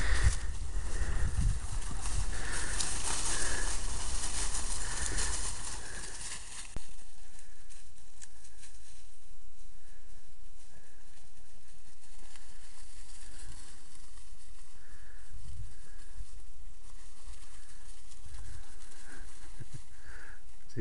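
Footsteps and rustling through dry brush, grass and leaf litter, loud for the first six seconds, then a steadier, quieter outdoor background in which faint short animal calls repeat now and then.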